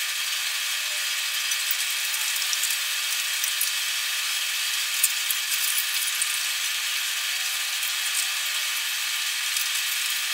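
Steady hiss with a faint hum from a water bath canner's pot of water heating on the stove, getting ready to come to a boil. A few faint light clicks sound over it.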